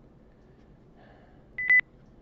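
A single short, high electronic beep about a second and a half in.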